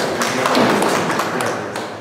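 A small group of people clapping, the applause thinning and fading away over about two seconds.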